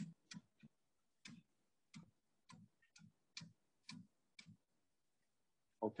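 Faint, sharp clicks at uneven intervals, about two a second, from a metal lathe's carriage being wound back two millimetres along the Z axis by hand. The clicks stop about a second and a half before the end.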